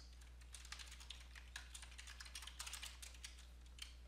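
Faint typing on a computer keyboard: quick, irregular keystroke clicks over a low steady hum.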